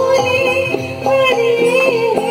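A woman singing into a handheld microphone over musical accompaniment, amplified through a PA, with her melody gliding and bending between held notes over a light, regular beat.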